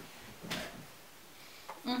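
A short knock or clunk about half a second in, then a closed-mouth "mm-hmm" hummed around a teeth-whitening mouthpiece near the end.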